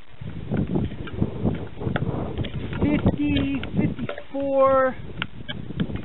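Scattered clicks and knocks from hands handling a chainsaw that is not running, as it is turned and its body is handled. A man's voice makes short sounds twice in the second half.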